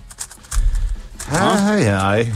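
Rapid light clicking of a Rubik's cube being turned fast in a timed speedsolve. About a second in, a drawn-out voice with a sliding pitch comes in over the clicks and is the loudest sound.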